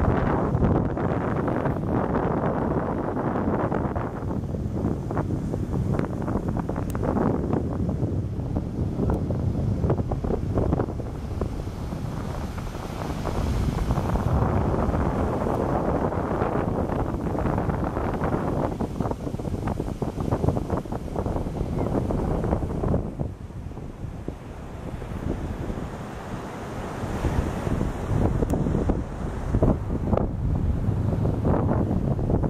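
Wind buffeting the microphone over the rush of choppy Lake Michigan surf breaking on a sandy beach. The wind eases for a few seconds past the middle.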